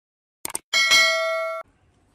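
Subscribe-button sound effect: a quick double mouse click about half a second in, then a bright bell ding that rings for under a second and cuts off abruptly.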